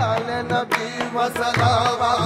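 Qawwali music: a male voice sings a wavering, ornamented line over held accompanying tones and regular hand-drum strokes.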